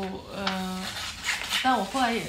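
A woman's voice speaking, with papers being handled and shuffled on a table.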